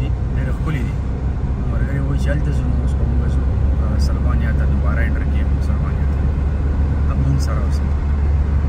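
Steady low rumble of a car driving at motorway speed, heard from inside the cabin, with voices talking indistinctly on and off over it.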